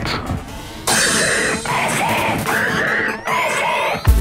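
Electronic dance music in a breakdown: the kick and deep bass drop out, leaving short chopped samples that repeat about once a second and rising sweeps that build toward the beat's return.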